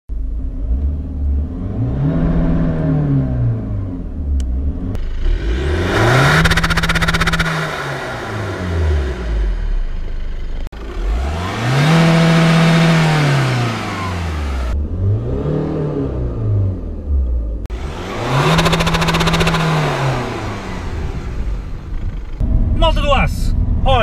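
Remapped Seat Ibiza 6J TDI diesel engine revving up and back down about five times, each rise held briefly at the top before falling away.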